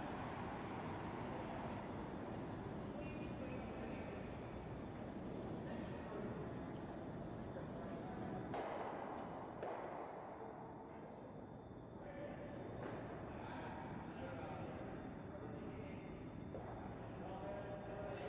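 Quiet curling-rink ambience: faint distant voices over a steady background hum, with a couple of faint knocks about halfway through.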